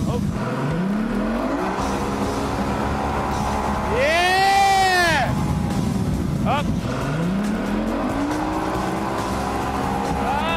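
Outboard motor on a towing inflatable boat revving up, its pitch rising twice as it pulls a water skier. About four seconds in, the loudest sound is a person's long yell that rises and then falls in pitch.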